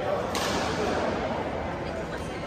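A badminton racket striking a shuttlecock: one sharp crack about a third of a second in, against a background of voices in the hall.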